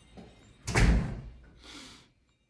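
A door slamming shut about two-thirds of a second in: one heavy thud that dies away over about half a second, followed near the end by a brief soft hiss.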